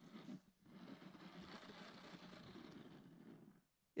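Near silence: faint, even room noise.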